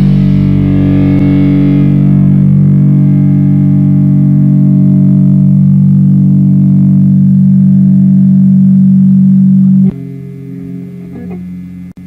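Distorted electric guitar chord in a hardcore punk recording, struck and left to ring, its bright upper end fading over the first few seconds. About ten seconds in it cuts off sharply to a much quieter held note.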